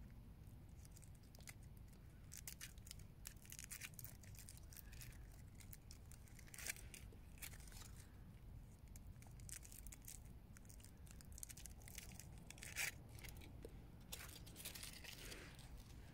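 Faint crinkling and tearing of stock-cube wrappers in scattered short rustles as stock cubes are unwrapped and crumbled into a cast iron pot, over a low steady outdoor rumble.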